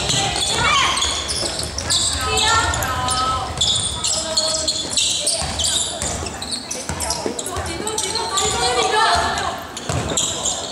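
A basketball being dribbled on a wooden gym floor, with voices calling out across a large hall.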